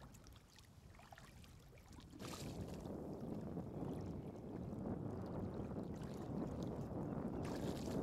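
Shallow seawater sloshing and splashing around rubber wellington boots as a man wades and stoops in it. It comes in about two seconds in and then runs steadily.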